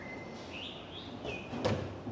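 A small bird chirping a few short high notes over faint lane background, with a sharp click near the end.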